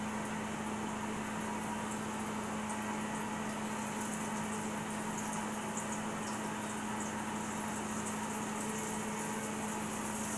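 Battered catfish fillets frying in hot grease in a cast iron skillet: a steady sizzle with light crackling as the fillets are laid in.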